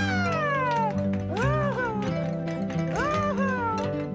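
A performer's voice doing dog howls for a puppet dog: one long falling howl, then two shorter rising-and-falling calls, over light background music.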